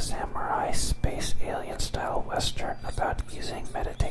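Close-miked whispered speech, continuing through the whole stretch.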